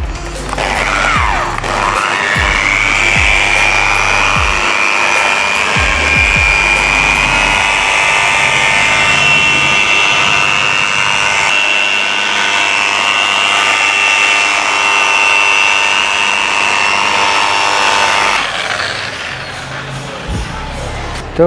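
Electric car polisher with a foam pad spinning up and then running with a steady high whine as it buffs polish into car paint. It stops about two seconds before the end. Background music with a beat plays underneath for the first half.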